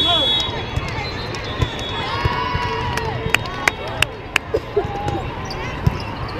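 Volleyball rally in an echoing arena: sharp smacks of the ball being hit, four in quick succession about halfway through, over crowd and player voices, with a long drawn-out shout just before them.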